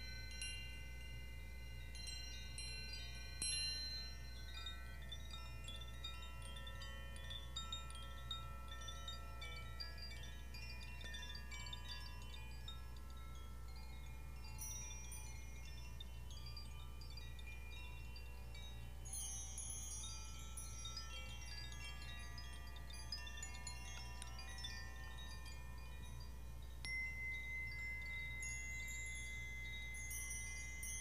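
Hand-held chimes swayed and shaken, with many small bright metal notes ringing and overlapping. The notes grow denser and higher about two-thirds of the way in, and a steady held tone joins near the end.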